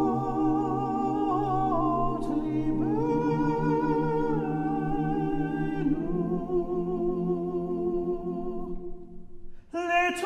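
Men's choir humming and singing held chords a cappella, the chords changing a few times, then thinning out and fading near the end.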